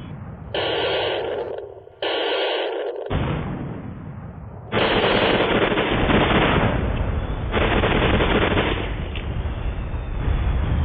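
Film battle soundtrack with gunfire, cut abruptly between clips in a montage. It turns louder and denser from about five seconds in.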